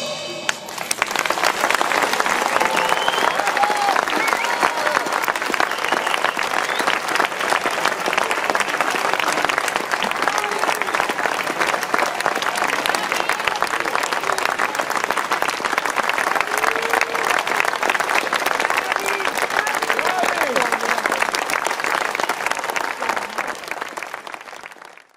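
Audience applauding, with dense, sustained clapping and scattered voices calling out.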